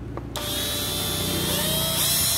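National (Panasonic) EZ6470 12 V cordless drill driver running free in its high-speed gear. Its motor and gearbox give a steady whine that starts about a third of a second in and rises slightly in pitch about halfway through.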